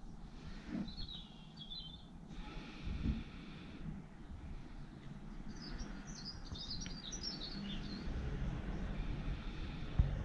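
Small birds chirping in two short bursts of twittering, one about a second in and a longer one in the middle, over faint low background noise.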